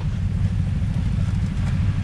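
BMW R 1200 GS boxer-twin engine idling steadily, a low even rumble with a fast pulse.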